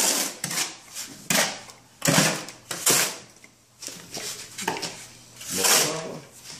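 Shovel and hoe scraping and turning damp sand-and-cement deck mud in a metal wheelbarrow: about five gritty scrapes, with a quieter spell in the middle. The mud is being mixed to a stiff, barely wet consistency for a shower pan pre-slope.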